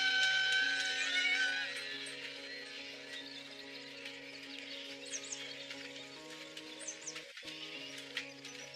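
A horse whinnying, its wavering call fading away within the first two seconds, over a soundtrack of held low chords. A few faint high chirps come in later.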